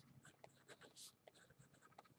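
Faint scratching of a pen writing on paper: a quick run of short strokes, with one longer, brighter scrape about a second in.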